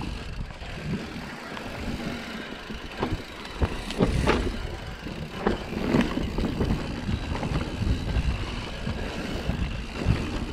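Mountain bike rolling fast down a dirt singletrack trail: a steady low rumble of tyres on dirt, with sharp knocks and rattles as the bike hits bumps, several of them between about three and six seconds in.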